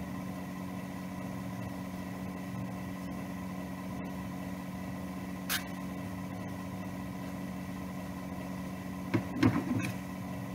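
A steady low electrical hum with a few fixed tones. Near the end comes a short cluster of sharp rustles and clicks from silk fabric and scissors being handled.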